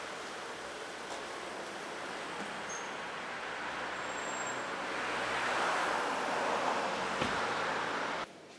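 Street traffic noise: a steady hiss of road vehicles that swells louder from about five seconds in, as a vehicle passes closer.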